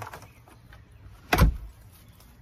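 A newly installed door with a new latch being shut: one solid thump about a second and a half in as it closes and latches.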